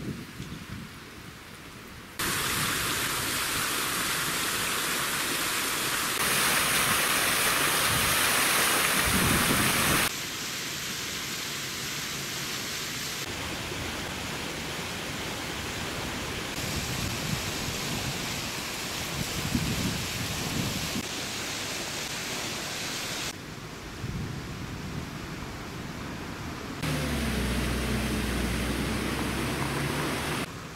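Outdoor background noise: a steady hiss that jumps in level and tone at each cut between shots. In the last few seconds, water splashing in a plaza fountain, with a low rumble under the hiss.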